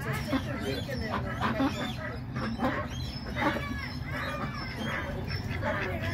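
A flock of domestic ducks quacking, many short overlapping calls one after another, over a steady low hum.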